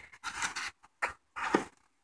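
Molded pulp packing insert being handled and lifted off a boxed juicer: a few short, faint scrapes and rustles.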